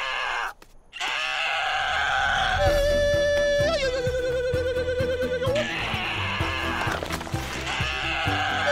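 Cartoon birds voicing made-up eagle battle cries: long held screeching calls one after another, one held note quavering up and down, meant as imitations of the Mighty Eagle's cry. Background music with a beat comes in under them about two and a half seconds in.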